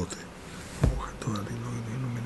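A single dull thump a little before the middle, then a man's voice held low and drawn out without words.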